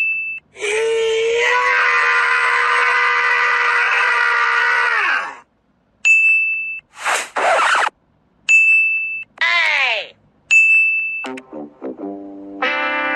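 Video-editing sound effects: short bright dings repeated about four times, a long held note that slides down and stops about five seconds in, a whoosh about seven seconds in, and a falling pitched glide. Music starts up at the end.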